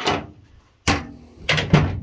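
A few sharp knocks and clunks of objects being handled in a pickup truck bed, the loudest near the end.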